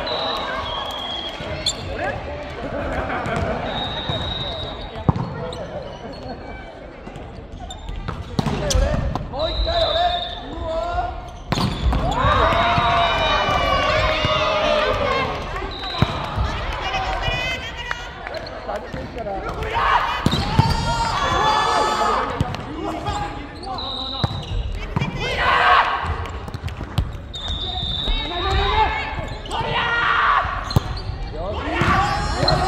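Indoor volleyball rally on a hardwood court: sharp ball hits echo through a large hall, sneakers give short high squeaks on the floor, and players shout calls to each other.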